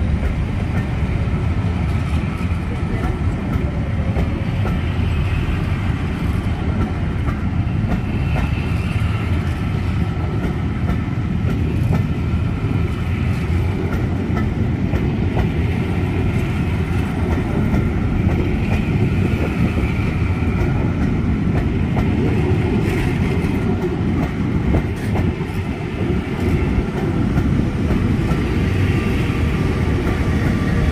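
West Coast Railways charter train's passenger coaches rolling past close by: a steady rumble of wheels on the rails with a faint clickety-clack.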